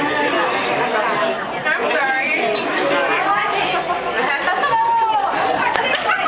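Overlapping chatter of many voices in a busy restaurant dining room, with no one voice standing out.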